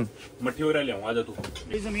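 Men's voices talking in Hindi, quiet at first and then closer near the end. Around the cut outdoors, a low rumble of wind on the microphone comes in.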